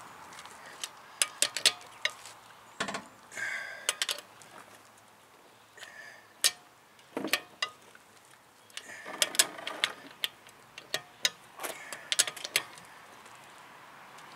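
Torque wrench and socket on a car's wheel lug nuts: scattered sharp metallic clicks and clinks, some in quick little clusters and a few briefly ringing, as the nuts are tightened down to spec.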